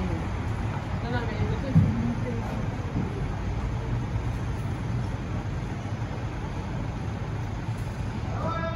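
Street ambience: a steady low traffic rumble, with faint snatches of passers-by talking in the first three seconds.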